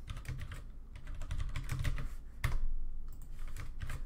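Typing on a computer keyboard: a run of quick, uneven key clicks, with one louder keystroke about two and a half seconds in.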